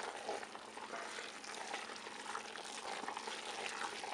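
A rod stirring a thick, wet fermenting mash of squished tomato and insect frass in a plastic bucket: a soft, steady wet churning with faint small clicks. The mash is stirred to work air into it.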